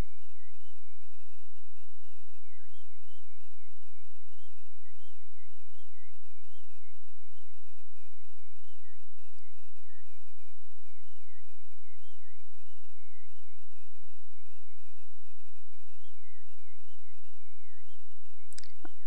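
A thin, high, whistle-like tone that wavers up and down continuously without a break.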